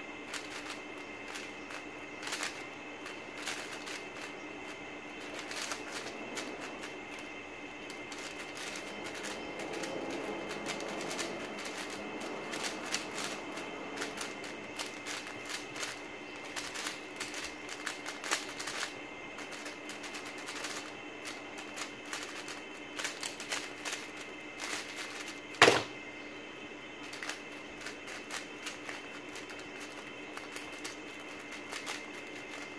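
Rapid, irregular clicking and clacking of a WuQue M 4x4 speedcube's plastic layers being turned during a timed solve. About 26 seconds in, one much louder knock marks the end of the solve, as the timer is stopped at the keyboard.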